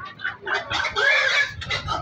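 Domestic pig squealing while being grabbed and handled: one loud, shrill squeal of about a second in the middle, with shorter cries around it.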